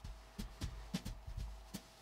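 Faint handling sounds of a linen pocket square being folded: a few soft taps and rustles scattered through the moment.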